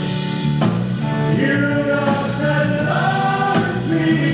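Live band and backing choir performing, the choir holding long sung notes over bass, guitars and drums.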